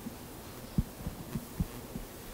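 Microphone handling noise: about six dull, low thumps at irregular spacing over two seconds as a handheld microphone is passed to an audience member.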